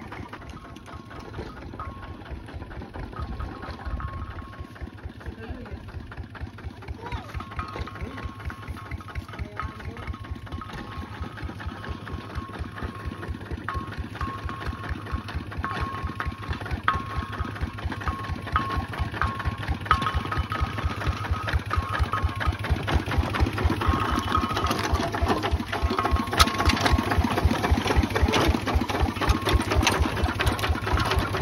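Single-cylinder Kubota ZT155 diesel of a two-wheel walking tractor running with a steady, rapid thudding beat, growing louder as it comes closer.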